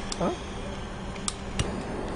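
Two sharp clicks from the igniter of a handheld butane blowtorch a little past the middle, as the torch is lit.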